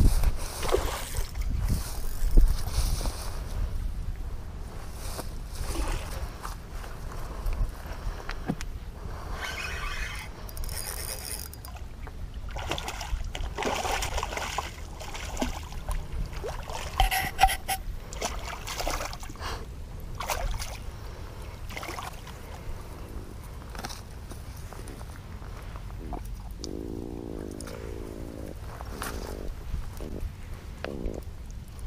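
A hooked freshwater drum splashing and thrashing at the surface of shallow water, with wind rumbling on the microphone. Near the end the landed drum croaks in the angler's hand.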